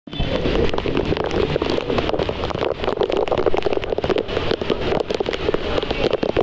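Heavy monsoon rain pouring down, a loud, steady, dense crackle of raindrops striking close to the microphone.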